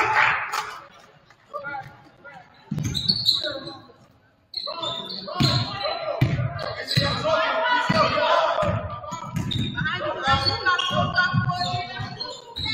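Basketball being dribbled on a wooden gym floor, low thumps repeating about every two-thirds of a second from about three seconds in, in a school gym with voices of players and spectators calling out over them.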